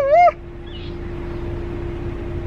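A man's loud, drawn-out, wavering vocal 'ooh' of delight, breaking off about a third of a second in, then a much quieter stretch with a steady faint hum.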